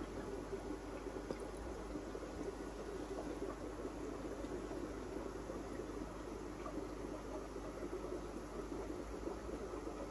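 Air-driven aquarium sponge filter bubbling steadily, over an even low hum.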